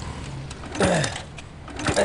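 A man's voice making two short vocal sounds, each falling sharply in pitch, about a second apart, over a steady low hum of engines.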